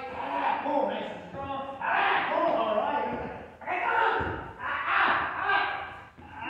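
People talking in a large, echoing hall, the words unclear.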